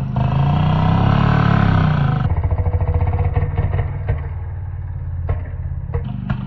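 Yamaha RX100's two-stroke single-cylinder engine revving as it strains to tow a tractor on a rope, heard slowed down in a slow-motion replay. Its pitch rises and falls over the first two seconds, then it settles into a slow, low pulsing beat, with one sharp click a little after five seconds.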